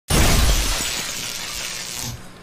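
Glass shattering: a sudden heavy impact with a low thump, followed by the crash of breaking glass that slowly dies away.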